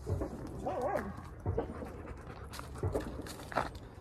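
Dog panting close by, with a short wavering whine about a second in and a few brief scuffling sounds.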